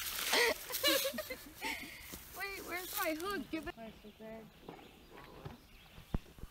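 A small bluegill tossed back into the water lands with a splash at the start, followed by a few seconds of voices; from about four seconds in it turns much quieter.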